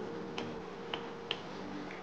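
Wooden rolling pin with handles rolling over dough on a floured surface, giving three sharp, irregularly spaced clicks.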